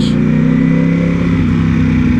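Ducati Panigale V4's V4 engine running steadily at low speed under the rider, heard from a helmet-mounted microphone.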